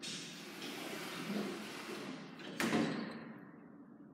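Schindler lift's stainless steel sliding doors closing with a steady running noise, meeting with a sharp thud about two and a half seconds in.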